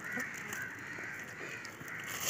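A crow cawing a few times, fairly faint, with light rustling of a plastic bag being handled.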